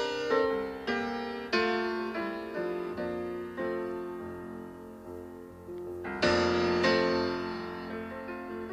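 Solo piano playing the opening of a song: chords struck one after another and left to die away, with a loud chord about six seconds in.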